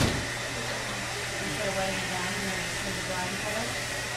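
Hair dryer running steadily in the salon, mixed with indistinct voices of people talking, and a brief knock right at the start.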